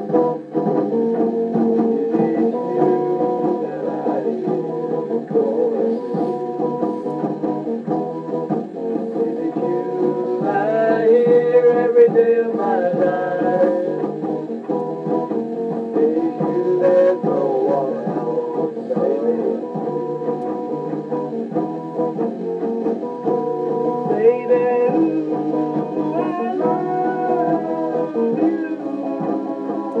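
A 1960s–70s band recording played back on a Ferguson reel-to-reel tape recorder: a guitar-led song with little bass. A voice sings about ten seconds in and again around twenty-four seconds.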